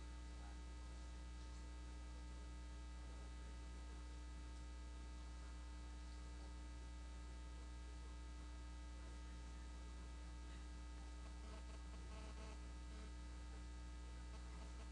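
Faint steady electrical mains hum with a stack of even overtones, running unchanged in the sound feed.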